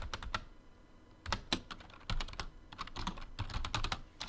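Typing on a computer keyboard: a few keystrokes, a pause of about a second, then a quick run of keystrokes.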